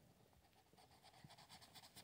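Near silence: faint room tone, with faint scratching of drawing on paper growing in the second half.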